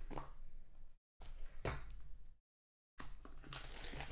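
Plastic wrapping being cut and torn off a sealed trading card box, crinkling and tearing in three stretches with silent gaps between them.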